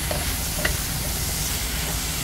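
Wooden spatula stirring diced squash, tomato and onion in a hot wok over a steady frying sizzle, with one short scrape against the pan about half a second in.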